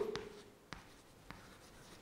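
Chalk writing on a blackboard: a few short sharp taps as the chalk strikes the board, with faint scratching between them.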